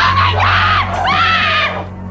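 A person screaming in fright: two long, high screams, one right after the other, cut off sharply near the end.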